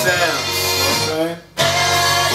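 A chopped music sample, with a voice in it, is played from an Akai MPC 1000 through studio monitors. About one and a half seconds in, the sound cuts off sharply and then starts again, as one chop ends and the next is triggered from the pads.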